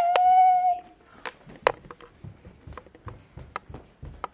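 A woman's high, drawn-out "yeah!" held on one pitch for about a second. Then come irregular light clicks and soft thumps of footsteps and handling as the camera is carried along.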